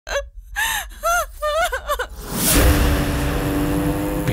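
A woman laughing in high, gasping bursts for about two seconds. About two and a half seconds in, a rushing swell leads into a held low chord of film score.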